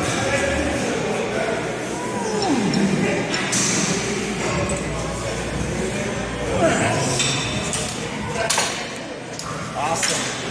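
Busy gym room sound: voices and background music, with a few short metallic clinks of weights and equipment.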